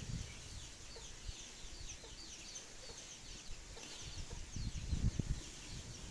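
Birds chirping in quick, repeated short falling notes. A few soft knocks come about four and a half to five seconds in.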